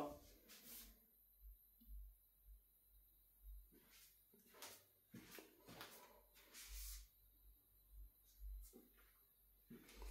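Near silence, with a few faint scattered ticks.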